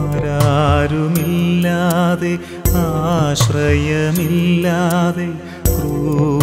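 Malayalam Christian Lenten devotional song: a wavering melody line over sustained low notes, with a strong beat about every three seconds.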